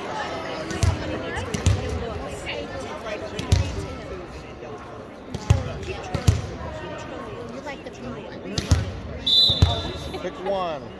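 A volleyball bounced on a hardwood gym floor: about seven dull, irregularly spaced thumps, with voices chattering around a large hall. Near the end comes a short, steady blast of a referee's whistle, signalling the serve.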